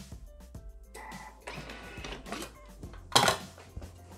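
Handling noise from a Bimby (Thermomix) food processor as its lid is taken off and its stainless-steel mixing bowl lifted out, with one loud clunk about three seconds in, over background music.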